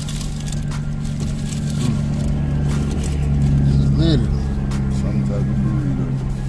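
Steady low running hum of a parked car heard from inside the cabin, with paper food wrappers rustling and a short murmured voice about four seconds in.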